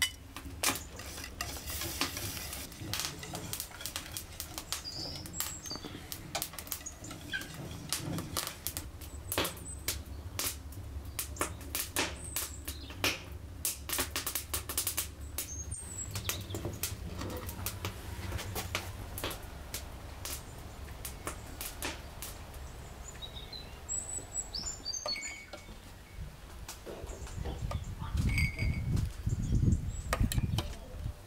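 A wire whisk beating a liquid in a stainless steel saucepan: a quick run of light clinks and scrapes as it strikes the pot's sides, with a few bird chirps. A low rumble comes near the end.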